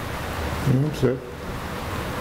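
Steady hiss in the hall, with a short murmured reply from a man about a second in.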